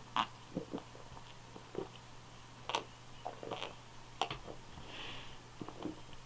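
A man drinking lager from a glass tankard: soft swallows and about ten short mouth and lip clicks scattered through the quiet, with a faint steady low hum underneath.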